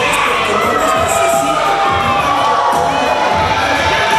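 Crowd cheering and shouting, with many children's voices among them.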